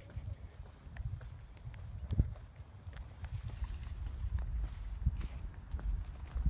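Footsteps on an asphalt path, a run of short, light knocks, over a steady low rumble.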